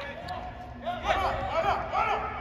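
Players' voices calling out during play on an indoor soccer pitch: several short shouts, starting about a second in.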